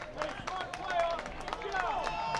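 Players calling out across an outdoor soccer pitch, with short sharp knocks scattered among the voices.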